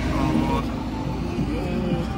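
Highway traffic, with the low, steady engine sound of a loaded truck passing, under background voices.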